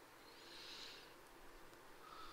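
Near silence: room tone, with one faint, soft hiss about half a second in.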